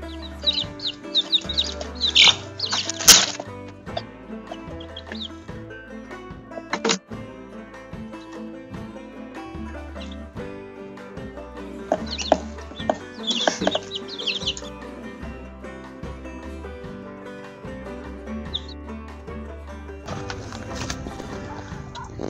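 Background music, with high-pitched peeping from newly hatched chicks in short clusters, near the start and again about twelve seconds in.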